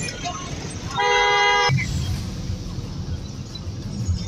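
A vehicle horn sounds once, about a second in, for under a second, over the steady low rumble of street traffic.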